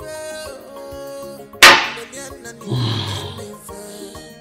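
Background music with one sharp knock about a second and a half in, a drinking glass set down hard on a wooden bar counter, followed by a short low grunt.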